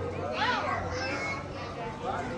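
Chatter of passers-by in a crowded market lane, several voices overlapping, with one high-pitched voice rising and falling about half a second in.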